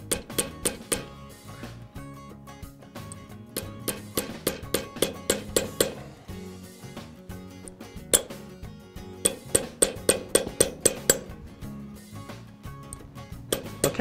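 Fretz 20 oz jeweler's sledge hammer striking a U-bent brass round wire on a bench anvil, compressing the U tighter. Runs of quick blows, about three a second, with short pauses between the runs.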